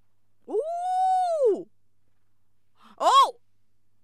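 A woman's drawn-out, high-pitched "oooh" that rises and then falls, lasting about a second, followed near the end by a short high exclamation.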